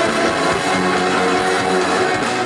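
Live band playing on stage, with electric guitars and bass, heard from among the audience.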